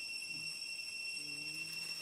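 Steady high-pitched insect whine, with a faint low voice-like sound briefly in the background about halfway through.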